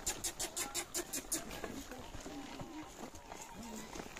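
Saddle horses stepping through soft mud, with faint men's voices. A fast, even run of high ticks fades out about a second and a half in.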